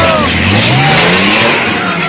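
A car engine revving, its pitch rising over about a second, amid loud crowd noise and shouting.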